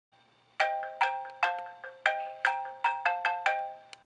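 iPhone alarm tone playing, a repeating melody of bright struck notes that each ring and fade, two to three a second, cut off abruptly at the very end.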